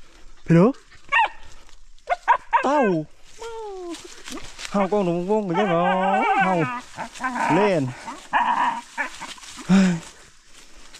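Dog barking repeatedly in short sharp barks that rise and fall in pitch, among a man's speech.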